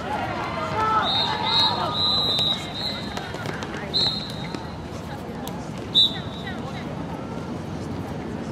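Handball game sounds on a hard court: players' voices calling out during play, several short high-pitched squeaks, the loudest about six seconds in, and a ball bouncing.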